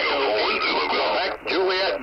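Single-sideband voice received through the Icom IC-705's speaker on the 17-metre band. A distant station's thin, narrow-band speech comes over a steady bed of static hiss.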